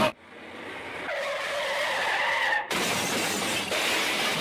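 Bowling ball rolling down a wooden lane, a steady rolling noise that builds after release. From about one second in, a thin squeal rides over it and cuts off abruptly just before three seconds, after which the hall noise is louder.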